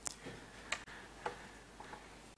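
A near-quiet pause in speech, with faint room tone and four soft clicks, roughly half a second apart.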